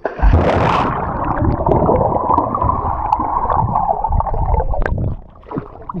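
A splash as a person dives head-first into a swimming pool, then about four seconds of muffled churning water that stops about five seconds in.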